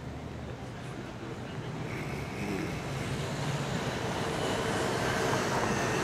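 Urban street traffic noise, growing steadily louder.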